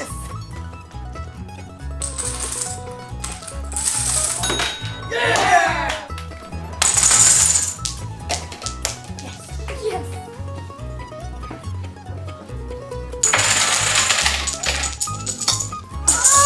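Background music with repeated bursts of hard clattering and clinking from a Rube Goldberg chain-reaction machine: marbles and small parts rolling and dropping. A longer run of clatter comes near the end as a line of dominoes topples.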